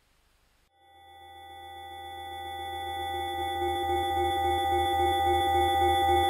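A moment of near silence, then a synthesized drone fading in and swelling slowly: a sustained chord of steady tones over a low hum, with a slight wavering pulse.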